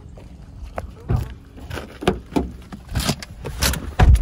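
Footsteps, then a car door being opened and someone getting into the seat: a string of short knocks and clicks, the sharpest near the end, with the rustle of a phone being handled.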